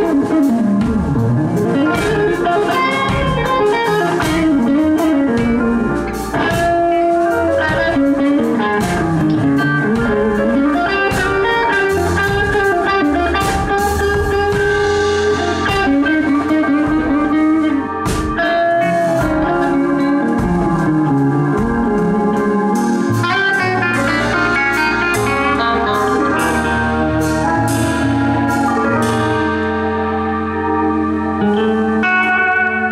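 Live blues-rock band playing: a lead electric guitar with notes that glide up and down in pitch over electric bass and a drum kit with steady cymbal and snare hits.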